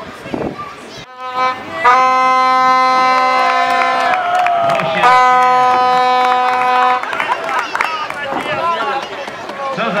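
A horn blown in two long, steady blasts of about two seconds each, with a short gap between them, followed by voices.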